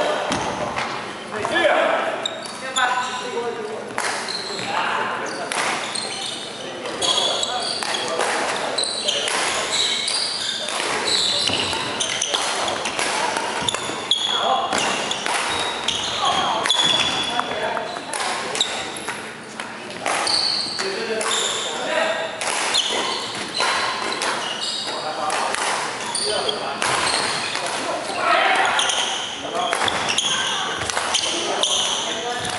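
Badminton rally in a large, echoing hall: sharp racket strikes on the shuttlecock and footsteps on the wooden court, with background chatter from people nearby throughout.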